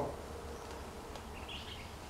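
Quiet outdoor background: a low steady rumble, with one brief faint high chirp about a second and a half in.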